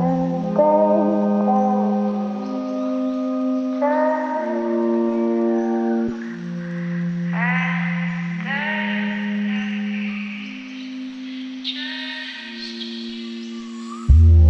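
Music without lyrics: slow, layered long-held notes that move from chord to chord every second or two, with no drums, growing a little quieter toward the end.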